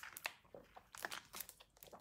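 Faint, irregular clicks and rustling: handling noise, with a few sharper ticks about a second in.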